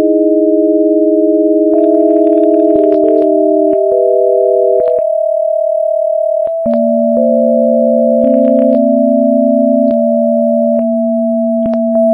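Electronic sine-wave tones, two or three at once, each held steady for a second or more and then jumping to a new pitch, with a click at each change. A few short crackles come in about two seconds in and again past the middle.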